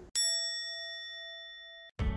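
A single bell-like ding: one strike that rings on as a clear, fading tone, then cuts off abruptly just before the end.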